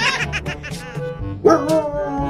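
A dog gives short yips, then about a second and a half in starts a long, slowly falling howl, heard over background music.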